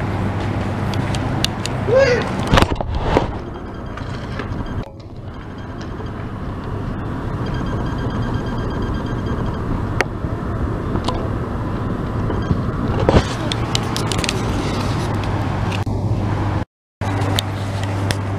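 Outdoor residential street ambience picked up by a handheld camera while walking: a steady low hum under a noisy background, with occasional handling knocks and a brief voice about two seconds in. The sound cuts out for a moment near the end.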